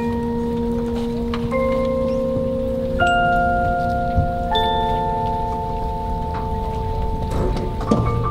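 Marching band front ensemble playing the show's opening on mallet and bell percussion: struck bell-like notes, a new one about every second and a half, each ringing on so that together they build a held chord.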